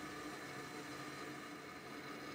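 Small metal lathe running as it turns the outside diameter of a mild steel bar: a faint, steady machine hum with a constant low tone.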